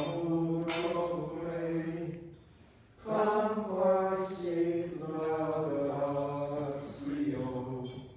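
Slow hymn chanted in long held notes, with a short break about two and a half seconds in before the singing resumes.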